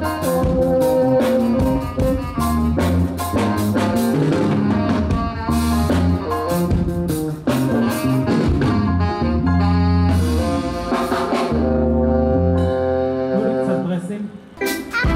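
Live band playing an upbeat jazzy tune with brass horns carrying the melody over drums and a deep bass line, amplified through a large PA speaker stack.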